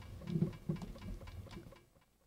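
Faint, muffled sound effects from a Flash animation playing through computer speakers in the room, a few short soft hits and ticks, fading to near silence near the end.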